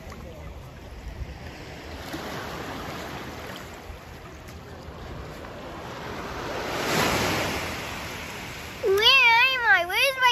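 Small surf washing up over wet sand at the shoreline, swelling to a peak about seven seconds in. Near the end a girl's high voice starts a wavering, up-and-down wail without words.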